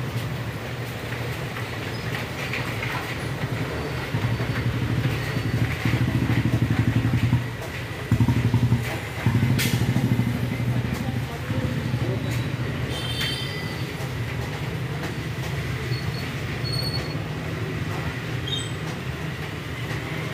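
LG Inverter Direct Drive front-load washing machine running a wash, its drum tumbling water and suds with a low, rhythmic hum. It swells louder for several seconds in the middle, with a brief break partway through.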